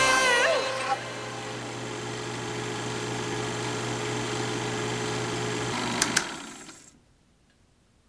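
A film projector running as an outro sound effect: a steady mechanical whir that ends with two quick clicks about six seconds in, then fades out. At the start the last notes of the pop song die away, bending down in pitch.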